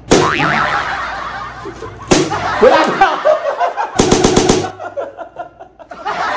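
Empty plastic bottle whacked against a head, once at the start and again about two seconds later, with laughter between; a quick run of about six sharp smacks follows a little past the middle.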